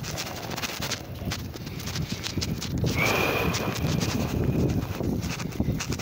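Fabric rubbing and pressing against a phone's microphone: muffled rustling and irregular soft knocks of handling noise. About halfway through, a thin steady high tone comes in for about two seconds.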